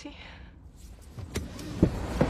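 Car sounds heard from inside the cabin: two dull thumps about a second and a half in, then the noise of the car on the move swelling up and holding steady.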